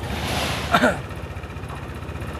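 A motorbike engine idling with a steady low throb, overlaid during the first second by a short rushing noise that is the loudest part.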